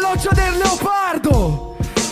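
A man rapping into a microphone over a hip hop beat, with deep bass thumps and a held chord under the voice.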